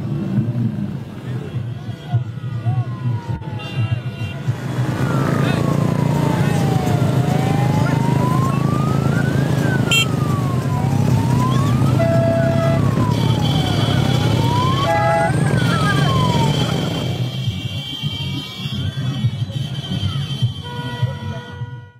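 Many motorcycle engines running together in a large procession, a steady low drone with crowd noise. Over it, from about two seconds in until near the end, a siren wails slowly up and down, about one rise and fall every two and a half seconds, with a few short horn blasts in the middle.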